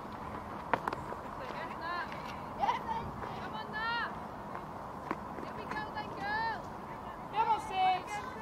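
Cricket ground ambience from the field microphones: several short, high-pitched shouted calls from players or spectators over a steady outdoor background, with two sharp knocks, about a second in and about five seconds in.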